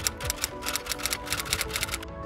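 Typewriter keystroke sound effect: a quick, even run of clicks, about eight or nine a second, over background music.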